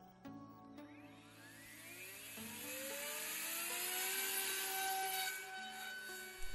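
Small brushless motor of an ultralight foam flying wing spinning its 4-inch propeller up after a hand launch, under automatic takeoff. It is a whine that rises in pitch from about a second in and grows louder over a few seconds, then settles to a steady tone as the plane climbs away. Faint background music with held chords plays underneath.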